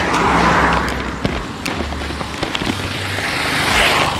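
Wind rushing over a phone's microphone on a moving motorcycle taxi, with the engine's low hum underneath and a few small knocks from handling and the road. The rush swells near the end.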